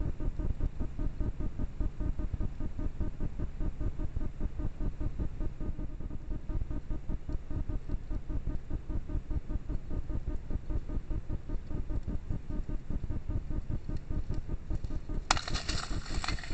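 Background music with a steady, quick, even pulse. A short loud burst of hiss comes near the end.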